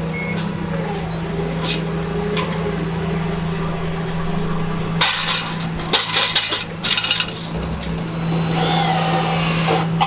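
A forklift engine runs with a steady low hum, its reversing beeper stopping within the first second. About halfway through come a run of sharp metallic clanks and rattles as an aluminium extension ladder is handled on a wood slab, and near the end a cordless drill gives a brief rising whir.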